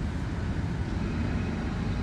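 Steady low rumbling background noise, even throughout, with no distinct events.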